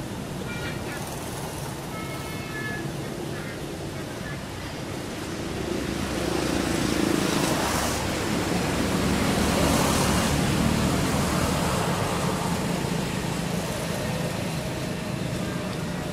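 Road traffic: a vehicle's engine and tyre noise builds up, passes at its loudest through the middle, and fades away. A few short high chirps sound in the first few seconds.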